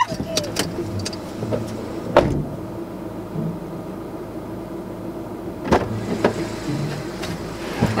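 Steady low hum of a car idling, heard inside the cabin, with a few short knocks, the clearest about two seconds in and just before six seconds.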